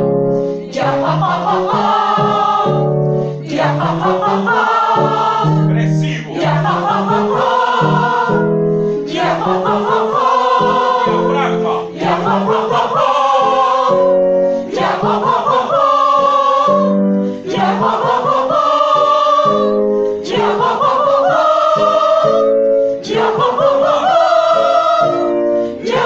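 A group of singers vocalizing a warm-up exercise together: a run of short sung phrases, each stepping upward in pitch, repeated about every three seconds with a brief breath between.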